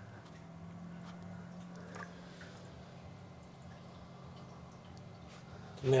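Protein skimmer pump running with a faint, steady low hum that comes in just after the start, and water trickling through the skimmer and sump.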